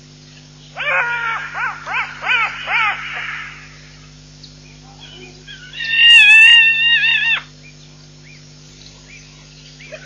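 A wild animal calling: about five short high calls that each rise and fall, then after a pause a longer, mostly level high call about six seconds in. A steady electrical hum runs underneath.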